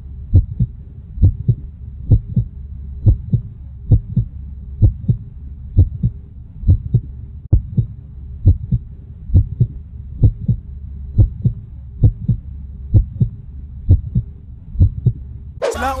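Heartbeat sound effect: a steady low double thump, a little over one beat a second, over a low steady hum, cutting off suddenly near the end.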